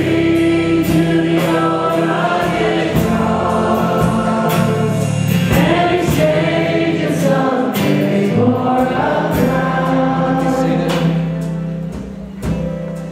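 Live church worship band playing a gospel song: several voices singing long held notes over acoustic guitar and drums with a steady beat, dying down near the end.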